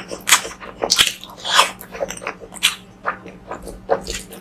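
Close-miked chewing and wet mouth sounds of someone eating curry and rice by hand, coming irregularly several times a second, over a faint steady hum.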